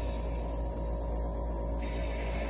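Nebulizer air compressor running: a steady, unchanging hum with a strong low drone.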